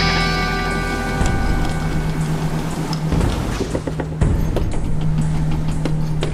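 A musical chord rings out and fades in the first second. Under it, a log flume's lift conveyor runs with a steady low hum and scattered clicks as it carries the boat uphill.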